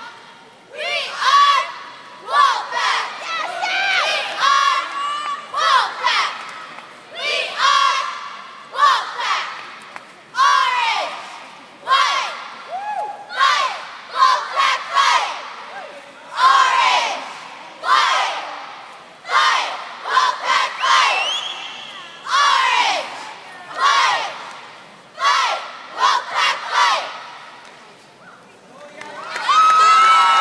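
Cheerleading squad shouting a chanted cheer in unison, a string of short loud yells, with spectators yelling and cheering along.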